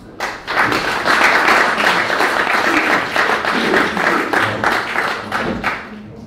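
Audience applauding: a dense patter of many hands clapping that starts just after the opening and fades out near the end.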